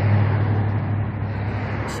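A motor vehicle's engine running with a steady low hum, under a constant noise. A short click comes near the end.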